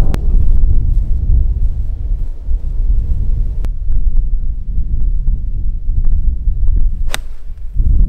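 A pitching wedge striking a golf ball off fairway turf: one sharp, crisp click about seven seconds in, after a couple of fainter ticks. Heavy wind rumble on the microphone runs underneath.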